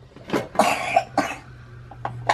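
A person coughing a few times in quick succession, one longer cough between two short ones.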